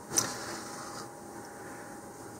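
One short handling knock or scrape, a little after the start, as hands move a cardboard model-rocket body tube and its wooden cradle on a cutting mat; then faint room tone.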